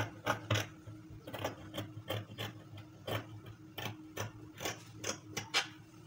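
Scissors snipping through layered fabric in a run of short, sharp cuts, about three a second and unevenly spaced, as the edges of two sleeve pieces are trimmed level.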